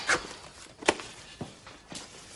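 A sharp tap about a second in, followed by two fainter knocks, over low room noise.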